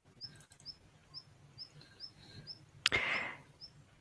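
Faint, evenly spaced high chirps, about two a second, like a small bird calling, with a couple of quick computer-mouse clicks early on and a short hissy rush about three seconds in.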